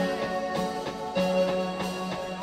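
A live rock band playing: held keyboard and electric guitar chords over light drum hits, with a new chord coming in about halfway.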